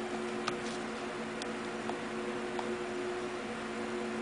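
A steady low background hum holding several constant tones, with a few faint, short ticks scattered through it.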